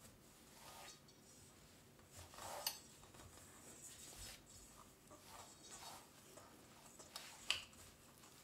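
Faint scraping of a silicone spatula against a stainless steel mixing bowl as soft cookie dough is worked and gathered, in irregular strokes, with one louder stroke about two and a half seconds in.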